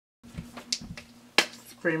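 Two soft low bumps and a few faint clicks of cosmetic products being handled, then one sharp click, as of a plastic cap or case snapping, about a second and a half in. A woman's voice begins near the end.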